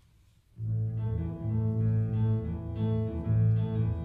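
Jazz band starting a mambo: a low, repeating bass line comes in suddenly about half a second in, with the band's harmonies stacked above it.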